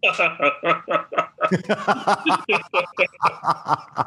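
People laughing: a long run of quick chuckles, about five a second.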